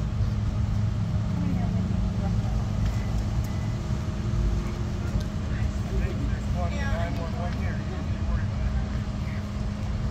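A vehicle engine idling with a steady low hum, with faint distant voices briefly in the middle.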